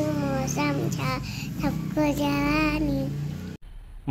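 A young girl singing a Hindi song in a high voice, with long held notes. The singing cuts off suddenly near the end.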